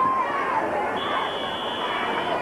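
Football crowd chatter and calls from the stands, with a referee's whistle sounding one steady high blast of just over a second from about halfway through, blowing the play dead after the tackle.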